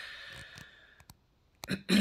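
A man's breath out in a pause between sentences, fading away over about the first second, followed by a couple of faint mouth clicks and a brief voiced sound as he starts to speak again near the end.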